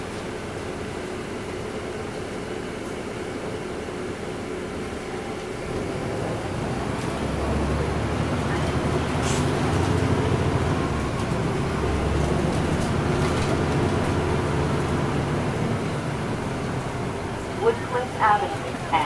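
Interior of a 2009 NABI 40-SFW transit bus with a Caterpillar C13 diesel engine: the engine idles at a stop, then the bus pulls away about six seconds in and the engine grows louder and deeper as it accelerates.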